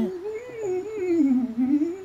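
A man humming a wordless melody that rises and falls, in a small room.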